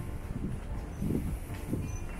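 Low, steady rumble of city street traffic, with irregular low thuds.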